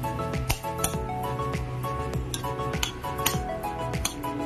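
A metal spoon clinking against a glass bowl several times as a shredded green mango salad is tossed, over steady background music.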